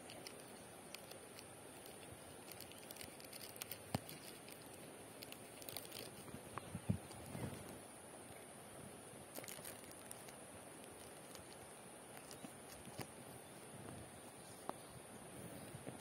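Faint crinkling and rustling of a thin plastic ice bag being handled and slipped over a fresh durian graft as a cover, with scattered small clicks and crackles, busiest in the first half.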